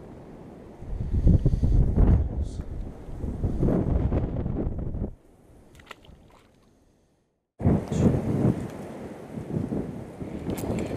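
Wind buffeting the microphone in loud, gusty rumbles. It drops away about five seconds in, the sound cuts out entirely for about half a second, and then the wind buffeting returns.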